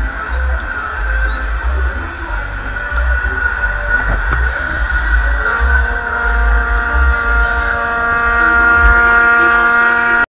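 Loud live music over a concert PA, heard close to the stage, with a strong pulsing bass; from about halfway a chord is held steady.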